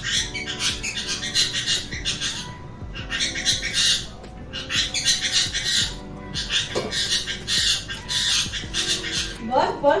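A pet green parrot squawking harshly over and over in short bursts. It is agitated and impatient to be given its food. Soft background music with steady notes runs underneath.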